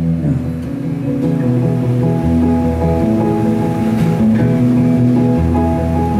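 Live indie-folk band playing an instrumental passage between sung lines: a strummed acoustic guitar over held chords, with deep bass notes changing every couple of seconds.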